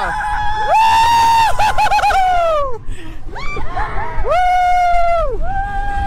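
Roller coaster riders screaming and whooping: several overlapping long cries, each rising, held high and falling away, over a steady low rumble from the moving train.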